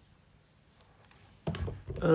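Near silence for about a second and a half, then a short cluster of soft knocks and thuds from objects being handled on the tabletop.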